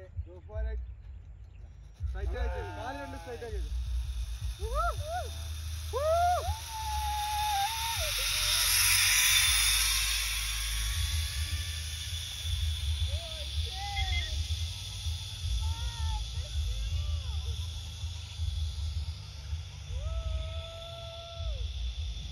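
Zip-line trolley pulleys running along the steel cable as a rider passes: a hiss that swells to a peak near the middle and fades. Voices call out in short rising whoops before and after, over wind rumble on the microphone.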